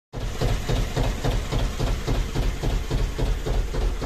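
A narrowboat's diesel engine running steadily at a slow idle, a deep hum with an even beat of about four thumps a second.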